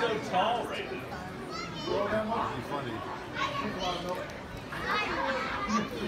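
Crowd chatter with many children's voices talking and calling out over one another.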